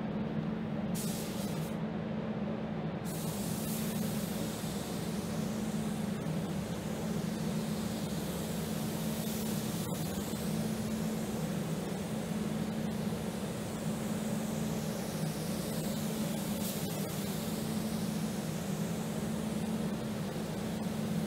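Air-fed gravity spray gun hissing as it sprays paint onto a pickup's body, a short burst about a second in and then continuous from about three seconds. Underneath is the steady drone of the paint booth's ventilation fans.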